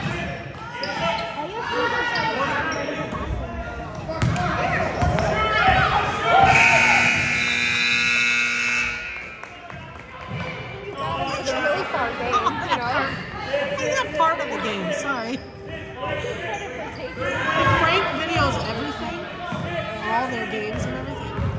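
A basketball being dribbled on a hardwood gym floor, with players' and spectators' voices echoing around the gym. About six seconds in, the scoreboard buzzer sounds, one steady tone lasting a couple of seconds and louder than anything else.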